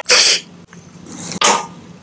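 Two short, loud breathy bursts of air at the lips, one at the start and one about one and a half seconds in, as an eyeball-shaped jelly cup is brought to and pressed into the mouth.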